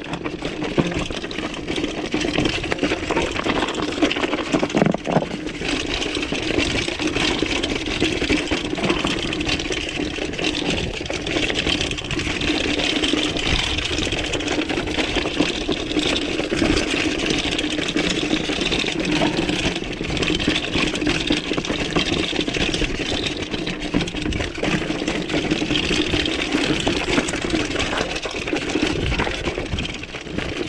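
Mountain bike rolling down a rocky trail: a steady mechanical buzz with the bike rattling and clattering over the rocks throughout.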